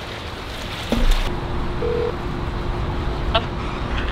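A phone call on the line: a faint steady phone tone over outdoor background noise. It is preceded by a bump about a second in.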